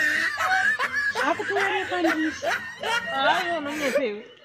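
A woman's voice talking animatedly in short, rapid bursts, mixed with laughter.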